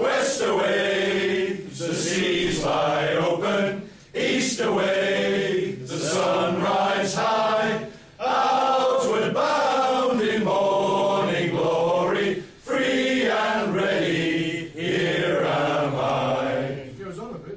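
A group of men singing together in unison without accompaniment. They take short breaths between phrases about every four seconds.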